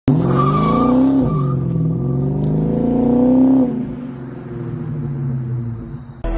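Chrysler 300's exhaust as the engine is revved twice: the pitch climbs, dips briefly about a second in, climbs again and holds, then drops back toward idle at about three and a half seconds.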